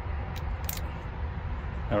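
Two short clicks as the two halves of a Mercury two-stroke outboard's poppet valve housing are pulled apart by hand, over a steady low background rumble.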